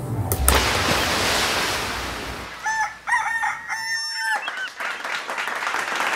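A rooster crowing in the middle, a few short pitched calls that bend at their ends, set between stretches of steady rushing noise, with a sharp hit about half a second in.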